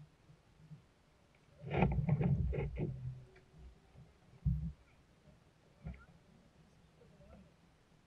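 Handling noise on a fishing kayak: a quick cluster of knocks and clatter about two seconds in, then two single dull thuds, as gear is moved about in the boat.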